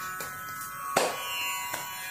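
Carnatic music accompaniment in a pause between vocal lines: a soft steady drone with three struck notes, spaced well under a second apart.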